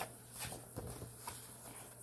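Soft knocks and rustles of a paperback picture book being handled and turned toward the camera, over a low steady hum.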